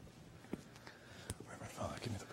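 Faint, hushed speech, too quiet to make out, with two small sharp clicks, one about half a second in and one just over a second in. The voices grow a little louder near the end.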